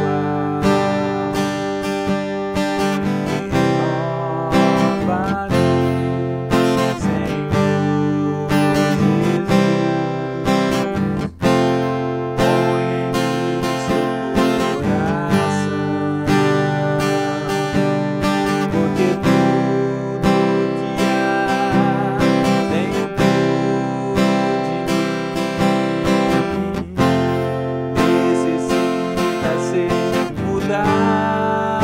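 A cutaway acoustic guitar strummed steadily through a three-chord progression of C major, F major and G major, with a brief break in the strumming about eleven seconds in.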